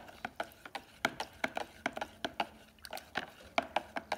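A metal tent stake stirring baking soda and water in a plastic pitcher, knocking and clicking against the pitcher's sides in a quick, irregular run of sharp clicks, roughly four a second.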